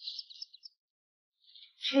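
A bird chirping: a few short, high chirps in the first half-second. A woman's voice begins near the end.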